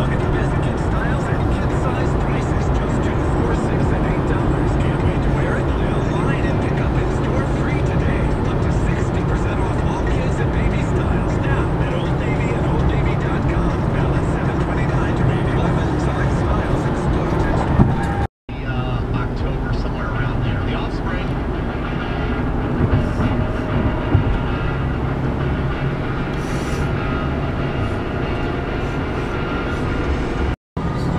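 Steady road and engine noise heard from inside a car cruising at highway speed, broken by a brief total dropout about eighteen seconds in.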